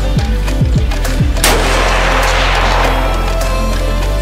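Background music with a steady beat of falling bass notes. About a second and a half in comes a single shot from a Thompson Center LRR bolt-action rifle in .308 Winchester, ringing out with a trailing echo over the music.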